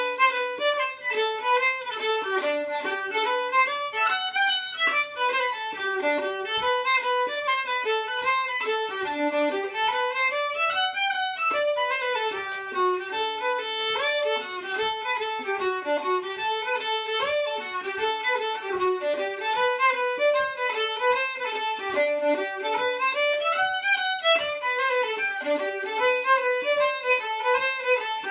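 Solo fiddle playing an Irish-style fiddle tune: a continuous run of short bowed notes climbing and falling in quick succession.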